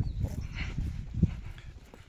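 Footsteps walking down a stony hillside path, uneven thuds over a low rumble. The strongest thud comes right at the start, another about a second in.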